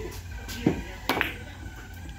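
Carom billiard shot: the cue tip strikes the cue ball, then the balls click sharply against one another, a few distinct clicks over about a second.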